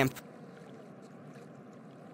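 Faint, steady background hiss of outdoor ambience, with the tail of a voice cutting off at the very start.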